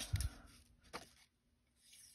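Hands handling die-cut vellum paper on a cutting mat, mostly quiet: a soft thump and rustle at the start and one light click about a second in.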